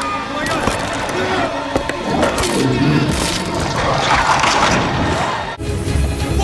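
Horror-film sound mix: voices without clear words over music and clattering. It cuts off abruptly near the end into a louder, deep low sound.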